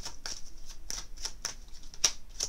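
A deck of oracle cards being shuffled by hand: a quick run of light card flicks and slaps, about four a second.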